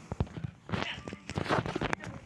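Handling noise from a phone being moved about close to its microphone: irregular clicks, knocks and rustles.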